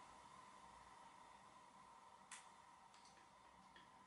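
Near silence: room tone, with a faint click of the display's push button about two seconds in and a couple of fainter clicks after it.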